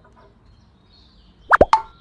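A quick cartoon-style 'plop' sound effect about one and a half seconds in: two or three very short pops, one sliding sharply down in pitch, over faint room tone.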